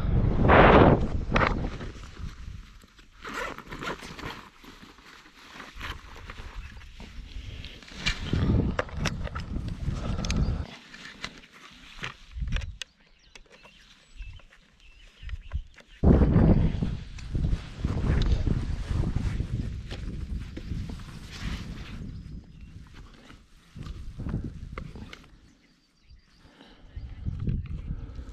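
Gusts of wind rumbling on the microphone, with footsteps on grass and scattered clicks and knocks of handling as a small tripod and camera are set up.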